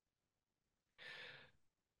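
Near silence, with one faint intake of breath about a second in.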